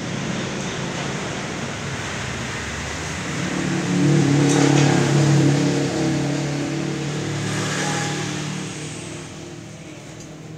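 A motor vehicle engine running steadily, swelling in level about four seconds in and fading away toward the end.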